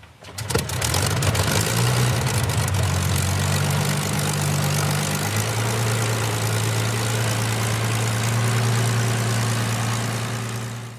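Rolls-Royce Merlin V12 engine of a Supermarine Spitfire comes in sharply with a ragged burst of firing, then runs steadily. Its note settles lower and more even about halfway through.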